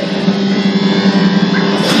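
Distorted electric guitar holding one steady droning note through the amplifier, with a short spoken word near the end.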